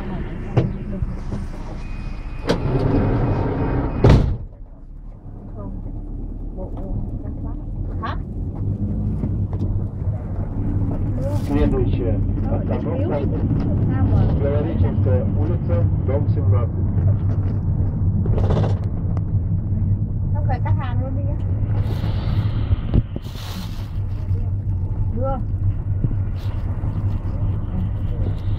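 City bus engine heard from inside the passenger cabin: a steady low drone that builds up over several seconds as the bus gets under way. Early on a loud rushing noise cuts off abruptly with a knock, and faint conversation runs underneath.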